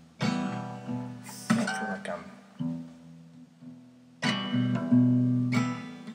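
Acoustic guitar strummed slowly: about five separate chords, each left to ring and die away before the next, with uneven pauses between them.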